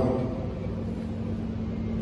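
A pause in a man's speech over a public-address system: the hall's steady low hum and room noise, with the echo of his last words dying away in the first half second.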